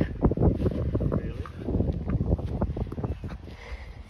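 Wind buffeting the phone's microphone, a low rumble broken by many irregular thumps, easing off toward the end.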